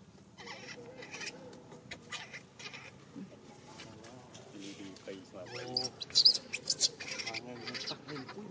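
Newborn macaque crying: a run of wavering, high-pitched wails and whimpers. A burst of sharp crackling, the loudest part, comes between about five and a half and seven seconds in.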